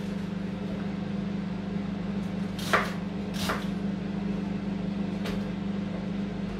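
A kitchen knife cutting through an onion held in the hand, giving three short crisp cuts, the loudest nearly three seconds in, over a steady low appliance hum.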